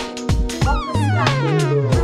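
A singer performing live over a backing track with drums and bass. Past the middle, the voice slides down in pitch in one long falling run.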